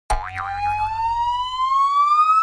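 Cartoon-style logo intro sound effect: one long whistle that starts suddenly and rises steadily in pitch, with a brief warble at its start, over a low rumble that fades out near the end.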